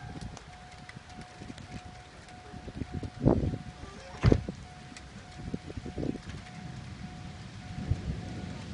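Wind buffeting the microphone in a low, uneven rumble, with two sharp knocks a second apart midway through and a faint beeping tone repeating throughout.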